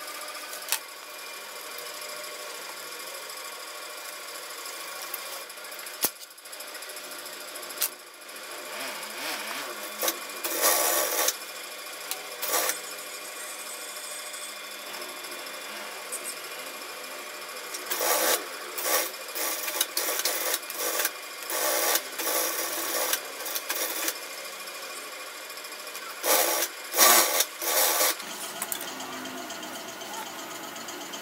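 Industrial sewing machine motor running steadily, with short irregular bursts of louder noise from stitching runs and the handling of stiff rexine and parachute fabric, most of them in the second half.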